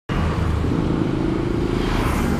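A Yamaha RX-King's two-stroke single-cylinder engine running steadily at idle while the bike stands still.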